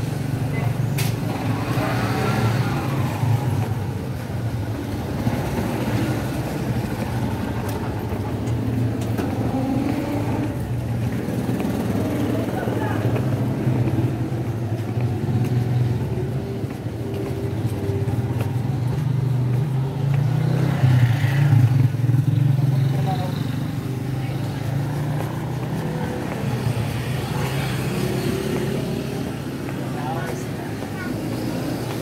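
A road vehicle's engine running steadily, a low drone heard from close by or from inside, briefly louder a little over two-thirds of the way through.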